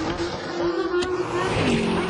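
Race car engine running at a steady pitch, dropping to a lower pitch near the end, with a sharp click about a second in.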